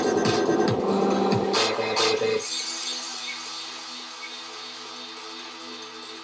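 A dubstep track playing back from the Ableton Live session. A loud full mix with drums cuts about two and a half seconds in to a quieter, sustained synth pad chord for the breakdown. A cough comes right at the start.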